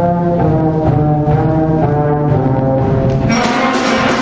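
A fifth-grade school concert band playing, with held low brass notes carrying the music. The full band comes back in, fuller and brighter, a little over three seconds in.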